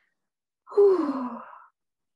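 A woman's voiced sigh, about a second long, falling in pitch.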